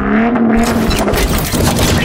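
Car engine revving as an intro sound effect: the pitch rises and holds for about half a second, then gives way to a dense rushing noise with sharp hits.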